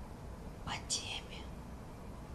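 A short whisper: a few hissy, s-like sounds lasting under a second, about three quarters of a second in, over a low steady room hum.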